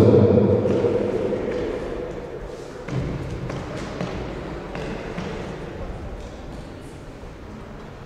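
Reverberant sports-hall background: indistinct voices echoing and fading away, with a few scattered thuds a few seconds in.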